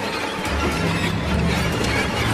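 Experimental sound-design soundtrack: a dense wash of noise, with a low rumble coming in about half a second in and a few sharp clicks.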